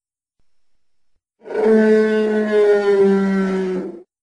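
A dinosaur sound effect: one long, pitched animal call that begins about a second and a half in, lasts about two and a half seconds, sinks slightly in pitch and has a couple of brief breaks.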